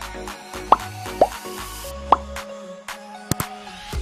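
Background music with a steady beat, overlaid with three short upward-sweeping 'bloop' pop sound effects in the first couple of seconds as the animated subscribe button pops up. Near the end come two quick click sound effects as the animated cursor presses the subscribe button.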